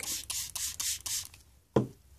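Small fingertip pump spray bottle spritzing watered-down pink dye in about six quick hissing pumps. A single sharp knock follows near the end.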